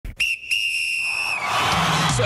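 A referee's whistle blown twice, a short blast and then a longer one that drops slightly in pitch as it ends. A rush of noise follows near the end as music comes in.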